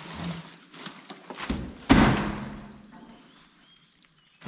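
A cardboard box being pulled out from among plastic-wrapped steel car-lift parts: rustling and knocking, then one loud thud about two seconds in with a short metallic ring as it is set down on the wrapped steel ramp.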